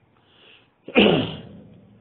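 A single sudden burst of sound from a man's voice about a second in, preceded by a faint breath, dropping in pitch and trailing off.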